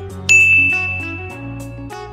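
A single bright, bell-like ding sound effect about a third of a second in, ringing and fading away over about a second and a half, laid over background music with plucked guitar-like notes.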